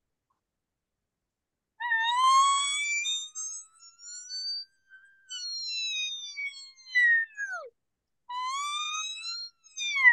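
Latex cow-and-calf diaphragm elk reed blown in the mouth, making mewing elk calls: a long call starting about two seconds in that slowly rises in pitch as the tongue presses the reed toward the roof of the mouth, then breaks and falls away, followed by a shorter call near the end.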